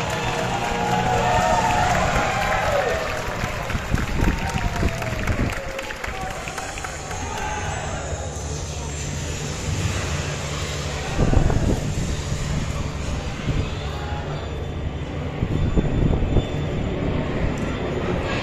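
Audience crowd at an outdoor show: many voices chattering, with some cheering and clapping, over the show's music on loudspeakers, whose melody is heard at the start.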